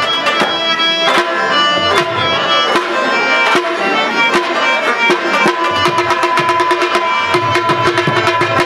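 Traditional Pashto music: a rabab being plucked over a fast, dense run of tabla strokes, with steady held harmonium tones coming in about two-thirds of the way through.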